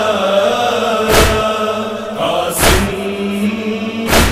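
Muharram nauha lament between sung lines: voices holding long chanted notes, with a deep thump twice, about a second and a half apart, keeping the slow beat.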